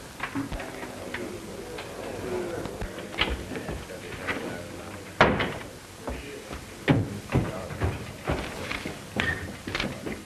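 Scattered knocks and thumps of people moving about and settling in a room, with low murmured voices and steady old-film soundtrack hiss; the loudest knock comes about five seconds in.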